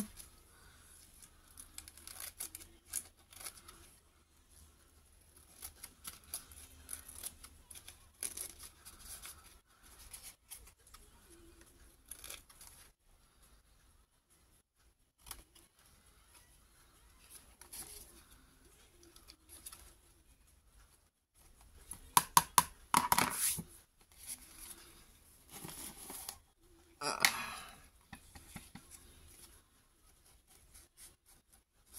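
Scissors snipping through paper in short cuts, trimming the edges of a guest-check sheet, with paper rustling as it is handled. There are two louder bursts of paper noise, about three quarters of the way through and again near the end.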